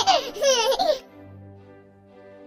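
A small child's high-pitched laughter in quick bursts, stopping about a second in, over soft background music.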